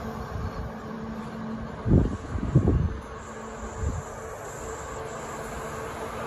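A coupled Kintetsu limited express electric train (30000 series Vista Car and 22600 series Ace) starting to pull away from the platform: a steady electrical hum with a cluster of low thumps about two seconds in, then a faint high whine comes in as it starts to move.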